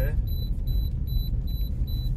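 A car's electronic warning chime beeping in a fast, even run of high beeps, heard inside the cabin over the low rumble of the car.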